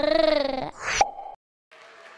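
Short logo sting: a wavering pitched tone, then a quick rising whoop ending in a pop about a second in, cut off abruptly. Faint room-like hiss follows near the end.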